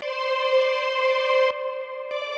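A sampled, sustained instrument tone played from an FL Studio Sampler channel: one held note with a rich stack of harmonics that cuts off about three quarters of the way in.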